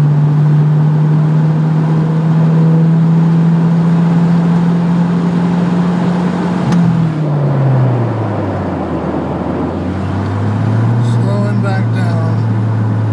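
1989 Ford Probe GT's turbocharged 2.2-litre four-cylinder, heard from inside the cabin, pulling at full throttle in fourth gear, its note climbing slowly and steadily. About seven seconds in there is a click, and the throttle is let off: the engine note drops away as the car slows, then levels off.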